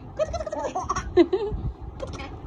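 A baby laughing: a string of short, high-pitched squealing laughs.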